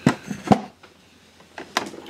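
Handling knocks of a metal-bodied Bolex B8 8mm cine camera being set down on a wooden box: two sharp knocks near the start, the second louder, then a few lighter clicks about three quarters of the way in.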